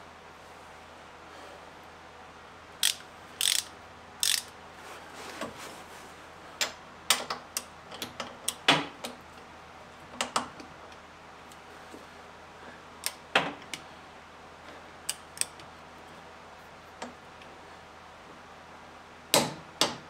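Click-type torque wrench ratcheting jack plate bracket bolts tight, in short scattered runs of clicks, the wrench being brought to its 50 foot-pound setting.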